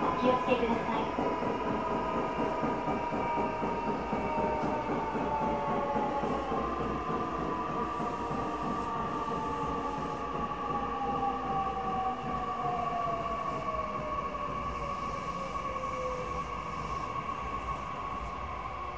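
Electric passenger train running, heard from inside the carriage: a low rolling rumble under a motor whine. One whine tone slides slowly downward from about four seconds in until near the end, while a higher whine holds steady.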